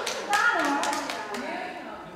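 Scattered hand clapping that dies out within about the first half second, followed by indistinct high-pitched voices, children's or women's, chattering.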